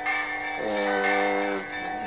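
A man's drawn-out hesitation vowel, held on one pitch for about a second, over a steady background of ringing tones.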